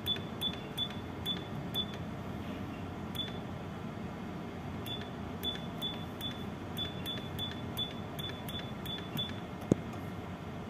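Keystrokes on an ECDIS keyboard typing a name, each key click followed by a short high electronic beep. There are about twenty of them in quick runs with a couple of pauses, over a steady low background hum, and a single low thump comes just before the end.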